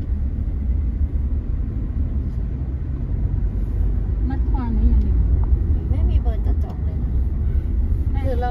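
Car driving along a dirt road, heard from inside the cabin: a steady low rumble of engine and tyres.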